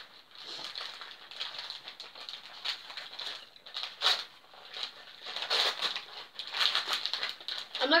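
Glossy wrapping paper crinkling and tearing as a small wrapped parcel is unwrapped by hand, in irregular crackly bursts that grow louder in the second half.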